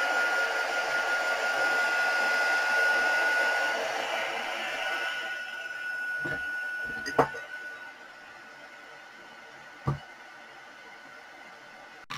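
Handheld electric heat gun blowing hot air, a steady rush with a steady high whine from its fan motor. It fades over a few seconds and stops about eight seconds in, with a few short knocks around then.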